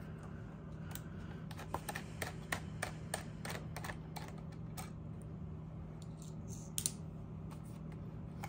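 Small screwdriver turning a screw out of a PowerBook 3400c laptop's chassis: a run of light, irregular clicks, with one sharper click near the end, over a steady low hum.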